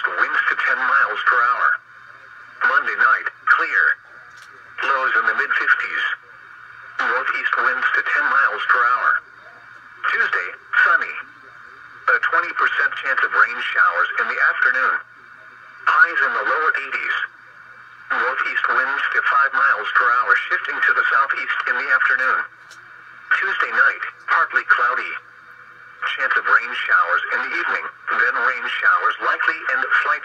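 Speech from a weather radio's loudspeaker: a National Weather Service broadcast voice talking in phrases with short pauses, thin and narrow-band.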